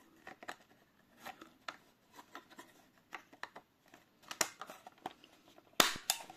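Black plastic back cover of a Selga-404 pocket radio being fitted onto the case by hand: scattered light clicks and scrapes of plastic on plastic, then one loud snap near the end.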